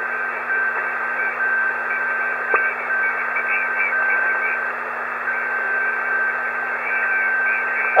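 Homebrew HF amateur receiver (AD5GH Express Receiver) on 20-metre upper sideband giving steady band-noise hiss between transmissions. A thin, steady whistle runs through it and breaks off several times, and a very weak station is barely audible under the noise.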